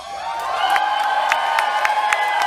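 Sustained synthesizer tone that slides up at the start and then holds steady, over sharp clicks about four times a second.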